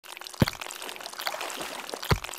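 Wet, trickling and sloshing water sounds, with a deep falling plop about half a second in and fainter plops after it.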